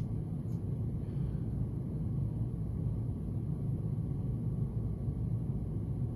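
Steady low background rumble of room tone, even throughout with no distinct sounds in it.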